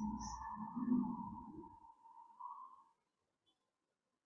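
A steady high-pitched tone that wavers slightly and fades out just under three seconds in, over a faint low murmur that dies away about two seconds in.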